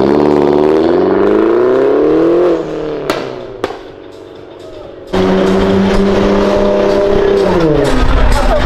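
A Mini Cooper's engine revs up steadily as the car accelerates away, then drops off, with two sharp cracks soon after. About five seconds in, another car's engine starts suddenly loud, holds steady revs for a couple of seconds, and falls away near the end.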